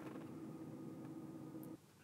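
Faint steady hum inside a car's cabin, a low drone with a thin higher tone, that cuts off sharply near the end.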